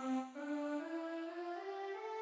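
GarageBand's Girls Choir keyboard voice playing a run of notes that steps steadily upward in pitch, a few notes a second, each one held into the next.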